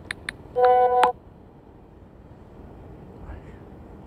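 Phone on-screen keyboard taps, two quick clicks, then a short, loud, buzzy horn-like tone lasting about half a second and ending in a click, as the message is sent.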